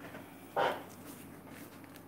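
Quiet room tone with a faint steady low hum, broken by one brief soft hiss-like noise about half a second in.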